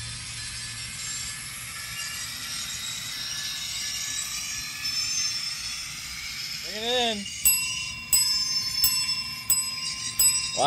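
Sound decoder of a ScaleTrains N scale EMD SD40-3 locomotive playing through its small onboard speaker as it runs: a steady diesel engine sound, then the locomotive bell starts ringing about seven and a half seconds in, about two strokes a second.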